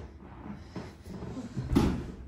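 Rustling and shifting, then a heavy thud near the end as a drugged person slumps out of a wooden chair onto a wooden floor.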